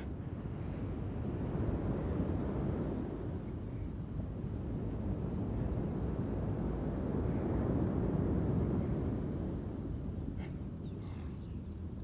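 Beach ambience: a low rumble of wind and surf that swells about two seconds in and again around eight seconds, then eases off.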